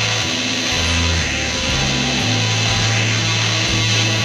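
Lo-fi instrumental rock recorded on a four-track cassette: distorted electric guitar over a bass line that steps between held low notes.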